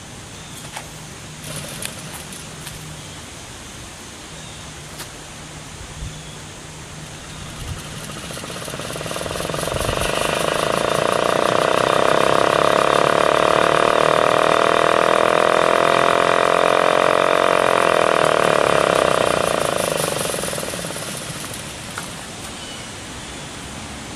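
1926 Federal type 2 siren, its rewound motor powered from a 12-volt battery, winding up about eight seconds in to a steady wail that holds for about ten seconds and then winds down. The motor runs on the battery but not on 120 volts, which the owner guesses means it was wired for direct current.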